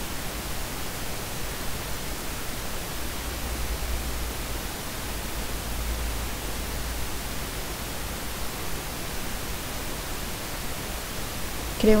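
Steady hiss of background recording noise with a low hum underneath, and nothing else until a voice starts at the very end.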